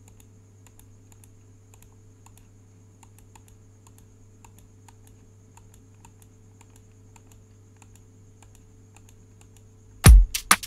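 Faint, irregular computer mouse clicks, a few a second, as drum steps are toggled on and off in a software step sequencer, over a steady low electrical hum.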